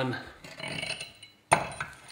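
A steel lower control arm being handled on a concrete floor: a faint scrape, then a sudden clank about one and a half seconds in that dies away.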